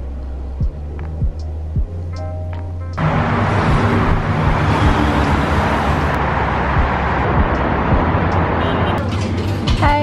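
A steady low hum in a lift car with a few light clicks. About three seconds in, the sound changes suddenly to busy city street traffic and wind noise, which drops away shortly before the end. Background music plays under it.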